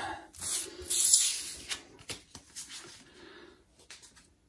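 Stiff cardboard trading cards being handled and shuffled by hand: a papery rustling and sliding, loudest in the first two seconds, then fading to faint rubbing.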